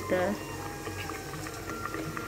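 Curry simmering in a covered aluminium pot, a faint, steady bubbling under the lid.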